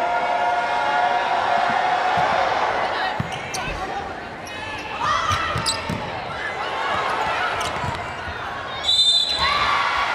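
Volleyball rally on a hardwood court: sneakers squeak, the ball is struck several times with sharp smacks, and an arena crowd keeps up a steady murmur that swells near the end with a shrill burst.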